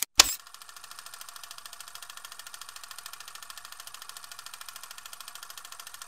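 A sharp click, then a steady rapid mechanical clatter at about nine clicks a second, like a film projector running.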